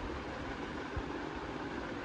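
Steady background noise with a low rumble and no speech, and a faint thump about a second in.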